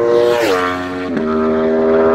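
Motorcycle engine running at high revs, its pitch stepping down twice within the first second and a bit, then holding steady.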